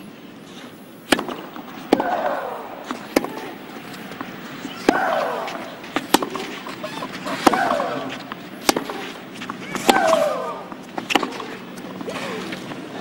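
Tennis rally on a clay court: about nine sharp racket strikes on the ball, a little over a second apart. Every other strike, one player's shots, comes with a loud woman's shriek that falls in pitch.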